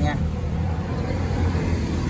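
Tractor diesel engine idling steadily, a low even rumble.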